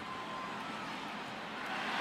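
Steady stadium crowd noise under a football game broadcast, growing louder near the end.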